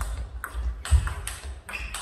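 Table tennis ball being struck by rackets and bouncing on the table in a fast rally: sharp clicks about every half second, with a few low thuds under them.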